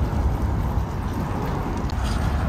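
Steady low rumble of outdoor background noise, with no distinct snips or clicks from the shears standing out.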